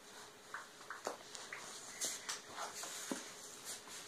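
Rustling and scattered light knocks from people moving about close by, with the recording phone being handled.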